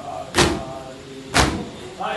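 Crowd of mourners beating their chests in unison (matam), two loud slaps about a second apart, with voices chanting between the strikes.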